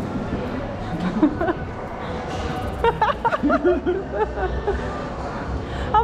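Knocking on a door, a couple of sharp knocks at the start and about a second in, over background chatter and music, with a chuckle near the end.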